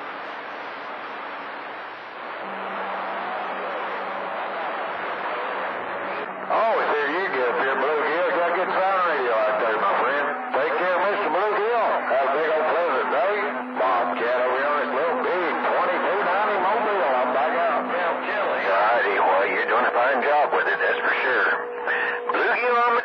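CB radio receiving long-distance skip on channel 28. There is hissing static for the first six seconds or so. From then on, weak, garbled voices come through the noise, with steady low tones running underneath.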